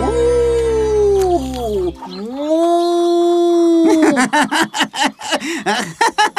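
A cartoon character's voice imitating a wolf howling: a long falling howl over music that stops about two seconds in, then a second howl that rises and holds, then a quick run of short yipping calls.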